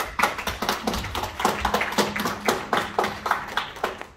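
A group of people applauding, a quick uneven patter of hand claps that stops just before the end.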